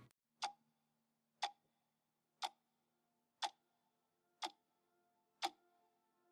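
Faint clock-like ticking, one sharp tick each second, over faint steady held tones.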